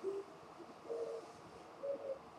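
A person's voice making three short, soft hoots, each a little higher in pitch than the one before.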